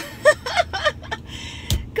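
A woman giggling in short bursts, with a single sharp click near the end, over a low steady car-cabin rumble.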